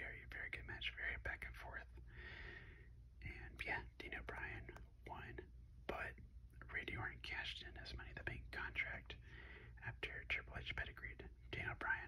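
Soft whispered speech running on without a break, over a faint steady low hum.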